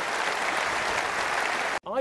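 Audience applause, a steady dense clapping that cuts off abruptly near the end.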